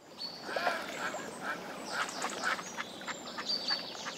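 Waterfowl and smaller birds calling together on a lake: many short, overlapping calls with a few high, thin whistles, fading in at the start.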